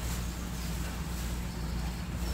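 A steady low hum over faint background hiss, with no distinct handling sounds standing out.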